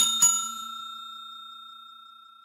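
Bell-ding sound effect of a subscribe-button animation, played as the notification bell is tapped: a bell struck twice in quick succession at the start, then ringing on and slowly fading away.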